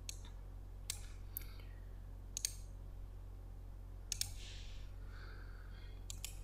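A few scattered computer mouse clicks, some in quick pairs, over a low steady hum.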